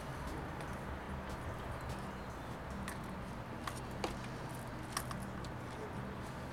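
Hands working seedling root plugs down into potting soil in a pot: a few faint sharp clicks and crackles over a steady low background hum.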